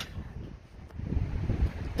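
Allis-Chalmers WD tractor's engine running as the tractor drives slowly, with wind buffeting the microphone; the rumble grows louder about halfway through. The owner says the engine badly needs a tune-up and carburettor work.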